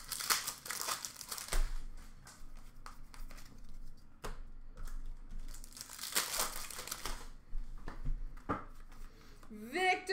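Foil wrapper of an Upper Deck hockey card pack crinkling and tearing as it is ripped open by hand, in two bursts: one in the first second and a half and one about six seconds in, with small clicks and rustles of cards between.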